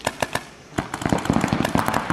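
Paintball markers firing: a few single shots, then from just under a second in a dense, rapid stream of shots.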